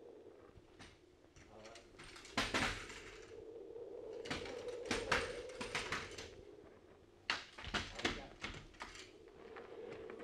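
Radio-drama sound effect of rifles being thrown out one after another: three clusters of sharp knocks and clatters over a faint steady hum.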